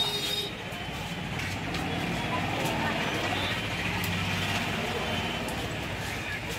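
Busy outdoor market ambience: indistinct background voices over the steady low hum of vehicle engines and traffic.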